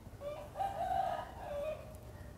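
A rooster crowing faintly: one drawn-out call lasting about a second and a half.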